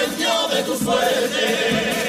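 A chirigota, a group of men, singing together in chorus to Spanish guitar accompaniment.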